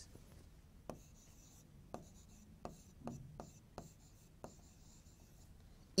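Faint taps and scratches of a pen writing a word on a board's surface: a handful of light, irregular clicks over a few seconds.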